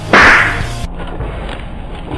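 A balloon bursting with a sharp, loud pop and a short hissing spray that fades within about half a second, over low background music.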